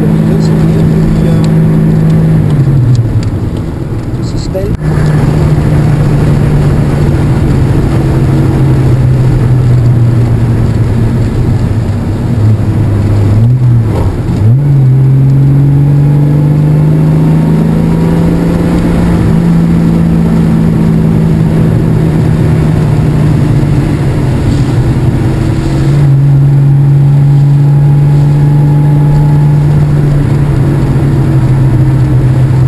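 Citroën Traction Avant 15 Six's straight-six engine under way, its note rising and falling with throttle and gear changes. It drops about three seconds in, picks up again near five seconds, dips briefly with a click around fourteen seconds, then climbs steadily.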